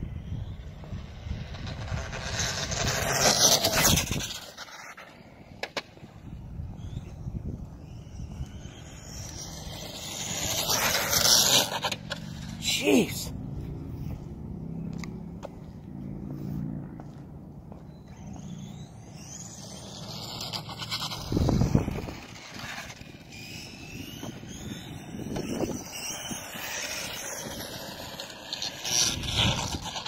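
A HoBao EPX electric RC car making several high-speed passes, its motor whine and tyre noise swelling and then dropping away sharply, about four times. Wind rumbles on the microphone throughout.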